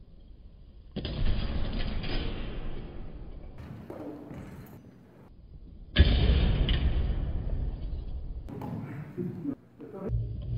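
Two fencers sparring with steel longsword feders in an echoing gym: shuffling footwork and movement noise begin suddenly about a second in and fade. About six seconds in there is a sudden loud hit as the blades come together in a bind, and the noise after it dies away. A brief muffled voice is heard around four seconds.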